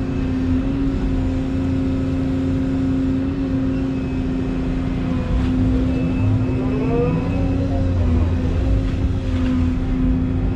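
Excavator's diesel engine running steadily under load while the hydraulics work the bucket through pond mud, heard from inside the cab. A whine rises and falls about seven seconds in as the machine swings, and the engine gets slightly louder near the end.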